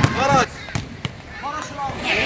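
A basketball bouncing on a hard outdoor court in a few sharp strikes, with young men's voices chattering in the first half second.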